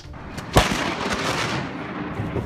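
A thunderclap: one sharp, loud crack about half a second in, followed by a noisy tail that fades away over the next second and a half.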